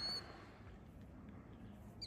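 Faint, steady outdoor background noise. A short, high whistled bird note sounds right at the start.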